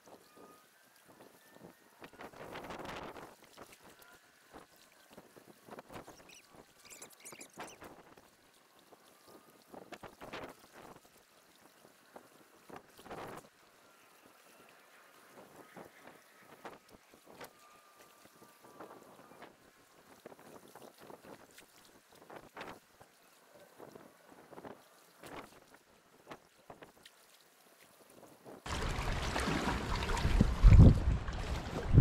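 Small waves lapping against a rocky shoreline: soft, irregular splashes. About a second before the end, loud wind buffeting on the microphone sets in.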